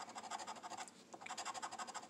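A large metal coin scraping the scratch-off coating of a paper lottery ticket in rapid back-and-forth strokes. It comes in two runs, with a brief pause about halfway.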